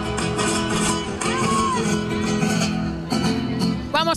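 Recorded Spanish music with guitar played through loudspeakers mounted on a car roof.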